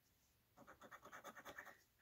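A coin scratching the latex coating off a scratch-off lottery ticket: a faint run of quick scrapes, about ten a second, starting about half a second in and lasting about a second.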